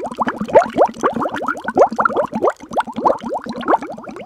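Water bubbling: a quick, dense run of bubble plops, each a short tone rising in pitch.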